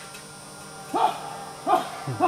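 A dog barking: two short, pitched barks, the first about a second in and the second near the end, over a quiet background.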